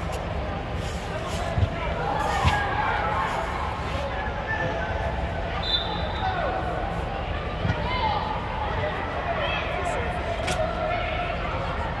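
Youth soccer game inside a sports dome: players and spectators calling out, with a few sharp thumps of the soccer ball being kicked, about two seconds in and again near eight seconds, over a steady low hum.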